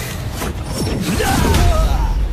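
Sound effects for an animated energy shockwave: a deep rumble under swooping, gliding whooshes, with a sharp hit about half a second in.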